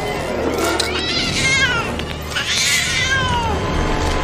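A cat yowling twice, each long call wavering and then falling in pitch, over a steady low rumble.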